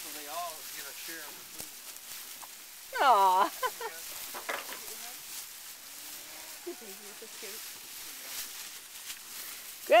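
Cattle feeding on dry hay close by: a steady crackle and rustle of stalks as they pull at it and chew. A short loud voice sounds about three seconds in.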